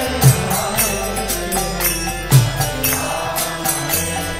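Devotional mantra chanting with music: a singing voice over steadily repeated jingling hand-percussion strokes, with a deep drum beat about every two seconds.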